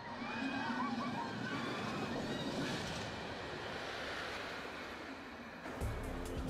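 Steady rushing noise of a magnetically launched amusement-ride sled running backward down its tall tower track, easing off slightly near the end.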